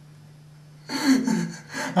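A man's voice: about a second of quiet room tone with a faint steady hum, then he blurts a word and breaks into a gasping laugh.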